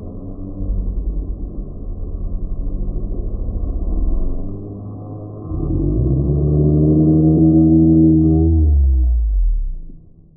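Slowed-down, pitched-down audio: a low fluttering rumble, then from about five and a half seconds in a deep, drawn-out wail, a man's scream slowed right down. The wail sinks in pitch near the end and stops.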